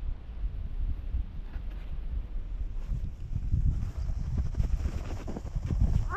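Wind rumbling on the microphone of a moving sledge, over the rumble and scrape of its runners on packed snow.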